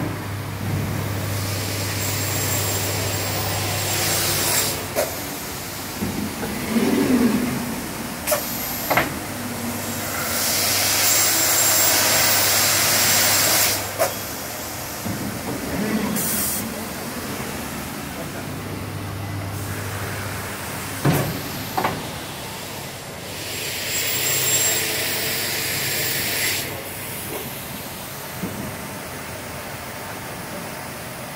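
STROMAB CT600 automatic angle crosscut saw working through its cycle: a steady motor hum, three spells of loud hissing noise lasting three to four seconds each, and sharp knocks in between.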